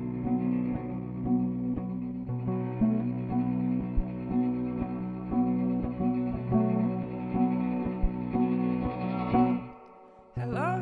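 A folk band playing a slow, pulsing instrumental passage: plucked and bowed strings with cello and pedal steel guitar, over a steady low drone, with a note struck about twice a second. The music breaks off near the end.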